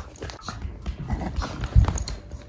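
Small terrier-type dog playing rough, making brief dog noises amid scuffling, with a heavy thump near the end.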